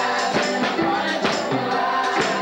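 Gospel song sung by a group of voices, with a tambourine keeping a steady beat of about three to four strokes a second.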